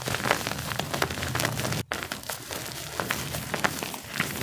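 A hand squeezing and crumbling powdery clumps of gym chalk and calcium carbonate powder: a dense run of soft crunches and crackles, with a brief break a little before the two-second mark.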